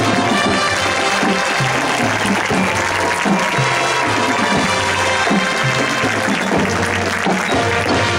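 Marching band playing, brass holding chords over a repeating low bass line, with crowd applause mixed in.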